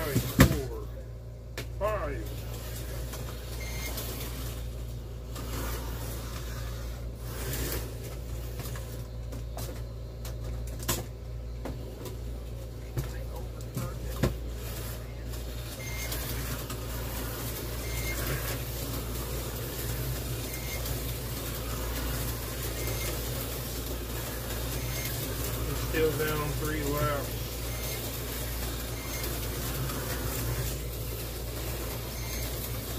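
Tyco 440 X2 HO-scale slot cars running laps around a plastic track, their small electric motors whirring steadily over a low hum. A sharp knock comes just after the start, and a few lighter clicks follow.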